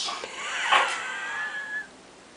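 A woman's frightened, high-pitched squeal after a breathy gasp: a thin tone that wavers, then holds steady and cuts off near the end.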